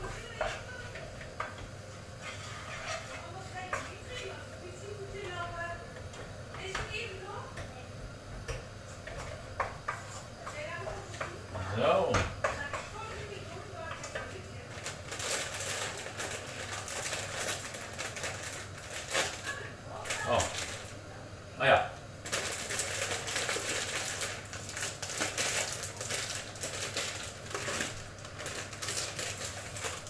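Food being stirred in a frying pan on a gas hob: a utensil clicks and scrapes against the pan. From about halfway in, a steadier hiss full of small crackles joins the clicks.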